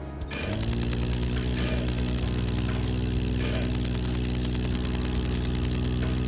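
CO2 laser unit firing: an electrical buzz that comes on about half a second in, rising briefly in pitch as it starts, then holds steady with a fast even pulsing.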